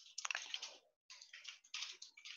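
Computer keyboard typing, faint, in three short runs of quick keystrokes.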